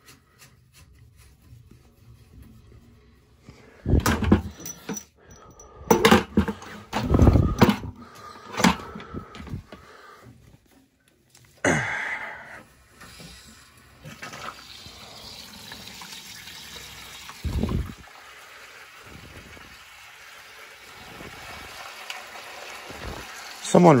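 A few loud clunks and knocks as the drain valve and hose are handled, then a steady rush of water as the hydronic boiler drains through its drain valve and hose, growing slightly louder toward the end.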